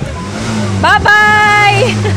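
A high-pitched voice shouting a long drawn-out "byeee!" about a second in, rising at the start and then held for almost a second. A low steady hum runs underneath.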